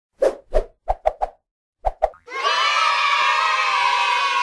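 Cartoon sound effects for an animated logo: seven quick pops, five in the first second and a half and two more about two seconds in, then a bright held tone with many overtones that sinks slightly in pitch.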